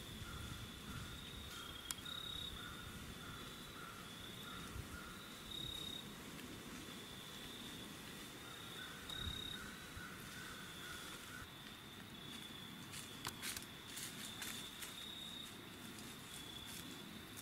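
Faint insect chorus: a steady high trilling with a lower, pulsing trill that comes and goes. A few light ticks come near the end.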